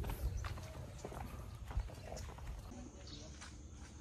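Footsteps on a hard path, irregular sharp steps over a low rumble, then a quieter outdoor background after a little over two and a half seconds.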